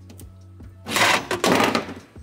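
A rough, noisy scrape lasting about a second, starting about a second in, over faint steady background music.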